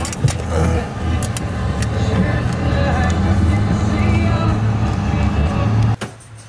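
A car's engine running at a steady low drone, with no clear change in pitch.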